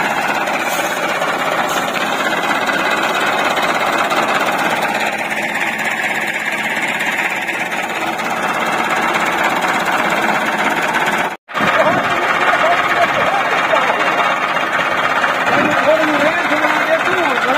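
Massey Ferguson 385 tractor's diesel engine running under load with a heavy, steady clatter while pulling a trolley, cut by a sudden split-second dropout a little past the middle.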